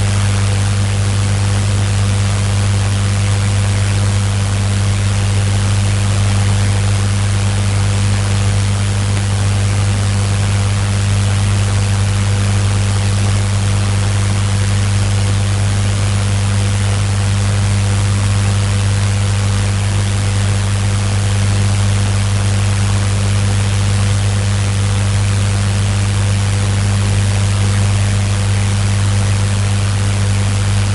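A steady low hum with a constant hiss over it, unchanging throughout.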